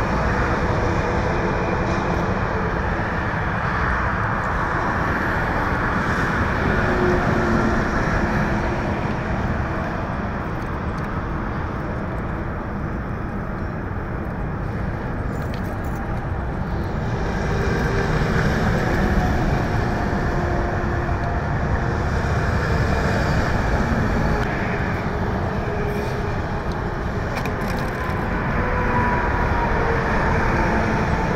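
Steady rumble of vehicle engines running, with road and traffic noise.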